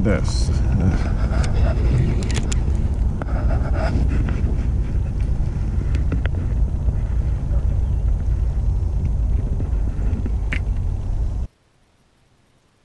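Wind buffeting an action camera's microphone as a steady low rumble, with a few sharp clicks and knocks from handling the fishing rod, reel and gear. The sound cuts off suddenly near the end.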